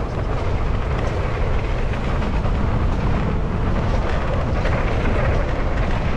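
Mountain bike riding down a dirt trail: steady wind buffeting on the camera microphone over the rumble and rattle of the tyres rolling on dirt.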